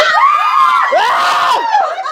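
A small group of people shrieking and laughing together in excitement, several high voices rising and falling over one another.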